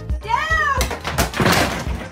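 A cat's meow, one call rising then falling in pitch, followed by about a second of harsh, hissing noise, over background music with a steady beat.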